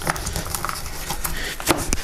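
A knife cutting along the backbone of a large grass carp, the blade making a run of small clicks as it passes over the vertebrae and rib bones, with one sharper click near the end.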